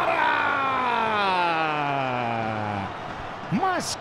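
A Brazilian football commentator's single long drawn-out call on a shot at goal, sliding steadily down in pitch and ending about three seconds in, over faint stadium crowd noise.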